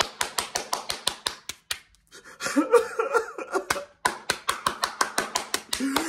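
One person clapping quickly in a small room, two runs of rapid claps with a short break about two seconds in, as mock applause. A voiced sound from him runs through the middle of the clapping.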